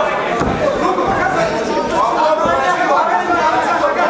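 Overlapping, indistinct chatter from many spectators' voices, echoing in a large hall.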